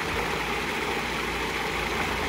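Food processor motor running steadily, chopping pimento-stuffed green olives into a thick cream cheese and feta spread.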